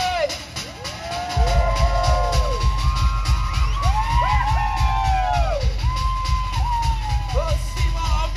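Drum-driven music for a Polynesian fire dance. The beat drops out briefly and comes back in about a second and a half in. Whoops and yells rise and fall over the music.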